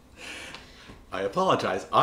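A man's audible intake of breath, then from about a second in his voice, laughing as he starts to talk.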